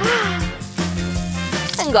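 Background music with a steady bass line, and a brief vocal exclamation right at the start.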